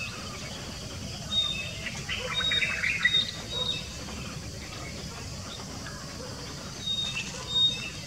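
Small birds chirping: short, high, thin notes in a cluster about one to four seconds in and again near the end, over a steady low outdoor background noise.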